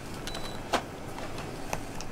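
Steady low hum of a tour bus interior, with two sharp clicks about a second apart.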